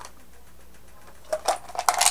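Drinking soda from a mug of ice: a quiet sip, then a quick run of small clicks and gulping sounds near the end as the drink is swallowed and the mug comes away from the mouth.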